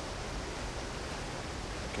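Steady outdoor jungle ambience: an even hiss with no distinct events.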